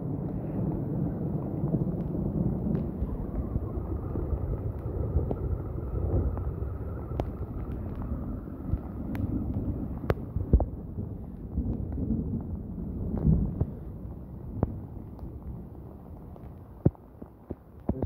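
Heavy rain with wind buffeting the phone's microphone: a dense, rumbling rush with scattered sharp clicks.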